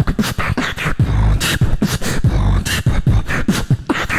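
Solo beatboxing into a handheld microphone, amplified through a PA. Quick vocal kick, snare and hi-hat hits in a fast rhythm, with deep bass sounds through the middle.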